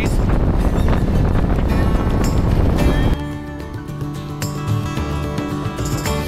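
Harley-Davidson Street Glide motorcycle riding downhill, its engine and wind rushing over the camera microphone. About three seconds in, the riding sound cuts off abruptly and background music takes over.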